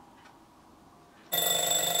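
Twin-bell alarm clock going off: faint ticks about once a second, then a loud steady ringing that starts abruptly just past halfway.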